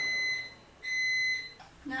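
An iPhone on speakerphone sounding two short, high-pitched beeps of about half a second each, one right after the other, as an outgoing call is placed.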